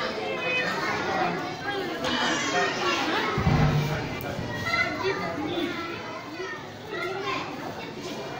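Crowd of children chattering and calling out in a large hall, many voices overlapping. A brief low thump sounds about three and a half seconds in.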